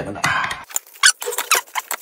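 Metal spoon clinking and scraping against a ceramic bowl while rice and dried chilies are stirred together: an irregular run of quick sharp clicks.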